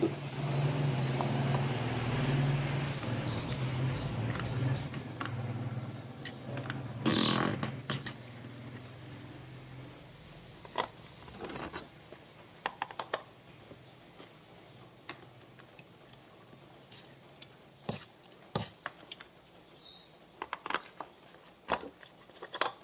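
Ink-blackened printhead cleaning fluid draining out of a plastic soaking tray, a low buzzing sound that slowly fades out over about ten seconds, followed by a few light clicks and scrapes.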